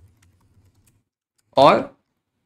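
Light typing on a computer keyboard: a quick run of faint keystrokes in the first second, over a low hum. A man's single loud spoken word comes near the end.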